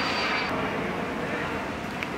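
Steady outdoor background noise, like distant traffic, with faint voices in it. A thin high tone stops about half a second in.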